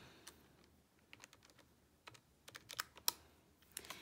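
Keys of a Casio fx-82ZA PLUS scientific calculator being pressed as a subtraction is keyed in: about a dozen faint, irregular clicks, the loudest about three seconds in.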